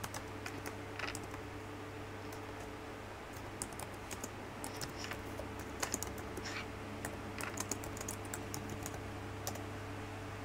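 Typing on a computer keyboard: irregular runs of soft keystrokes, busiest in the second half, over a steady low electrical hum.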